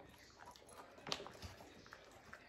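Dogs eating small chewy treats from a hand: faint chewing and crunching, with a sharper crunch about a second in.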